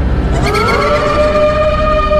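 Siren-like sound effect: a tone that glides up about half a second in and then holds one pitch, over a low, steady rumble in the soundtrack.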